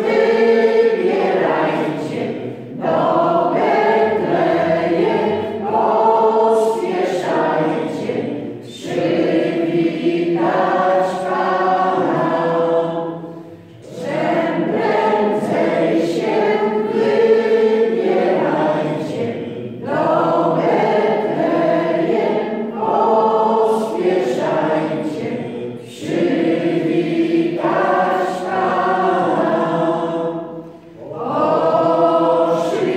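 A small group of voices, mostly women's, singing a hymn together without accompaniment, in phrases of about five seconds with brief breaths between them.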